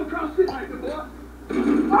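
Speech: men's voices talking at moderate level over a low steady hum, which cuts off at the very end.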